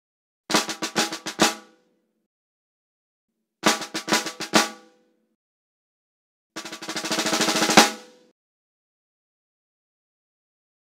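Snare drum played in three short bursts a couple of seconds apart: two quick runs of strokes, then a roll that swells to a loud final accented stroke.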